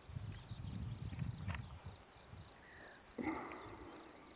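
Steady high-pitched insect chirring with an even pulse, over a low rumble during the first half. A brief faint voice comes in about three seconds in.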